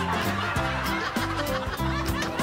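Canned audience laughter, chuckles and snickers, laid over background music with a steady beat.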